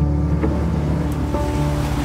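Soft background music of held notes, with a steady rushing noise that grows louder about halfway through.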